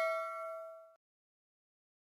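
A ringing bell-chime sound effect from the subscribe animation's notification bell: several steady tones fade, then cut off suddenly about a second in.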